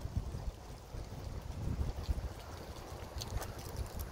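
Wind buffeting the microphone outdoors: an irregular low rumble, with a few faint clicks about three seconds in.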